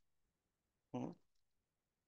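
A man's short questioning "hmm?" about a second in; otherwise near silence.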